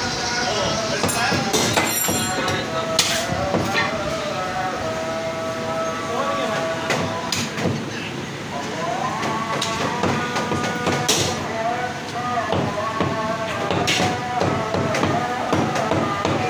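Cleaver chopping mutton on a wooden log chopping block: irregular single sharp strikes, some in quick pairs.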